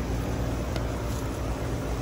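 Lennox central air conditioner's outdoor condenser unit running steadily: a constant low hum with an even rush of air over it.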